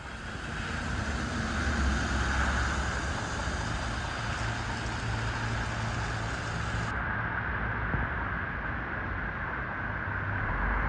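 Large coach bus moving slowly on wet pavement: a steady low engine hum under a broad hiss. The high part of the hiss drops away about seven seconds in.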